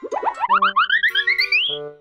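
Cartoon transition sound effect: a quick run of short rising boings that climbs in pitch for about a second and a half, over a few held musical notes.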